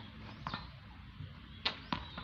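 Tennis ball bouncing on a concrete court as it is collected: a faint tap about half a second in, then two sharp knocks close together near the end.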